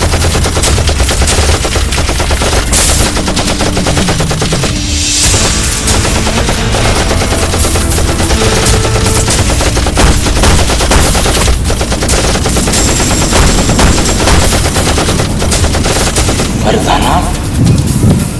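Automatic rifle fire: rapid shots follow one another without a break through the whole stretch.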